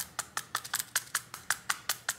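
A rapid, fairly even run of light, sharp clicks, about seven a second, from the opened smartphone being tipped and handled.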